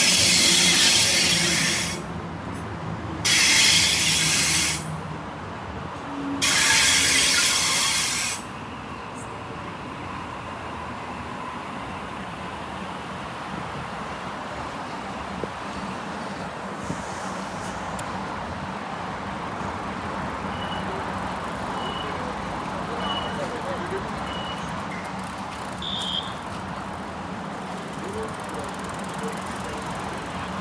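Sydney Trains A set (Waratah) double-deck electric train coming to a stop at a platform, with three loud bursts of hiss and squeal in the first eight seconds. The stopped train then sits with a steady hum, and from about two-thirds of the way in short high beeps repeat about once a second.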